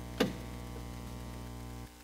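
The low held note of a worship band's closing chord ringing on as a steady hum, then cut off abruptly shortly before the end, with one sharp click about a quarter second in.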